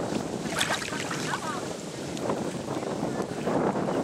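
Water sloshing and lapping around a swimming Newfoundland dog and a person wading beside it, with wind buffeting the microphone.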